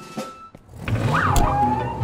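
Cartoon vehicle sound effect for an animated police car: a low engine-like rumble starts just under a second in, with a quick pitch that sweeps up and back down over it, under background music.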